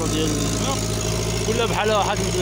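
Water pump's small engine running steadily with a low, even hum.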